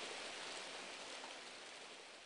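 A faint, steady hiss of background noise, slowly fading out.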